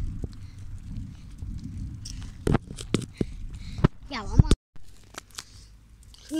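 Wind rumbling on a phone microphone held by a cyclist while riding, with scattered knocks from handling the phone. A short voiced sound from the rider comes about four seconds in, then the audio briefly cuts out and the rumble eases.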